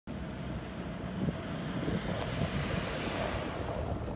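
Wind buffeting a moving microphone: a steady low rumble with hiss, and one short click a little past two seconds in.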